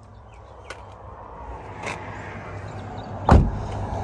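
A Toyota Hiace van's front passenger door is shut with a single heavy thud about three seconds in, after a few light clicks and handling noise.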